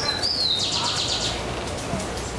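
A small songbird singing: one high slurred whistle, then a quick high trill lasting about half a second, over a steady low background rumble.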